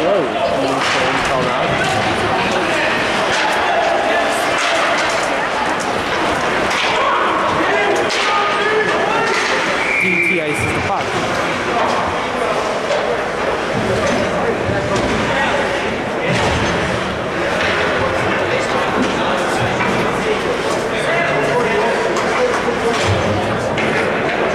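Ice hockey rink during play: voices chattering in the stands, with sticks and puck clacking and bodies banging into the boards. A short high whistle about ten seconds in, the referee stopping play.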